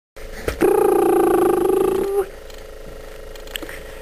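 A voice holds one steady high note for about a second and a half, rising slightly as it ends, like a drawn-out coo or 'mmm'. Just before it there is a click, and a faint steady hum runs on after it.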